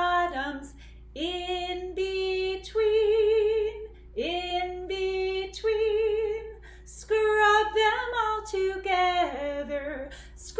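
A woman singing a children's handwashing song unaccompanied: short repeated lines ('in between', 'scrub them all together'), some held notes wavering in a slight vibrato.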